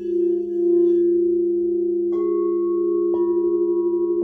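Crystal singing bowls ringing together in several sustained tones with a slow beating wobble. A bowl is struck with a mallet about two seconds in and another about a second later, each adding a new higher ringing tone over the others.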